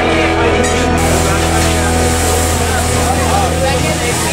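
Several people talking over a steady, loud low hum.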